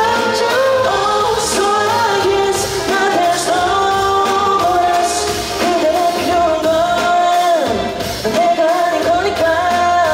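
Pop-rock band song: a male voice singing a held, gliding melody over electric guitar and full band accompaniment.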